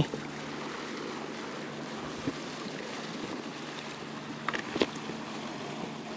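Sea washing against shore rocks, a steady rushing hiss, with a few faint clicks about two seconds in and again near five seconds.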